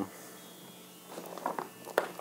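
Faint soft knocks and rustling about a second in, then one sharp click at the end, over a low steady hum.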